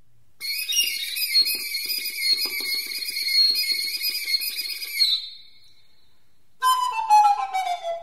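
Recorder playing a long, high, wavering passage for about five seconds, imitating the high buzzing song of the European serin. After a short pause, a second phrase near the end slides downward in pitch.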